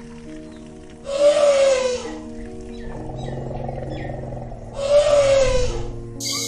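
Elephant trumpeting twice, about three seconds apart; each call is a loud blast that falls in pitch. Soft piano music plays underneath.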